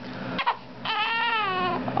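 Young baby's cry: one drawn-out, wavering wail about a second long that falls in pitch, after a brief click about half a second in.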